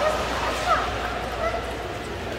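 Short, scattered voice calls and distant chatter, some sliding up or down in pitch, echoing in a large indoor ice rink over a steady low hum.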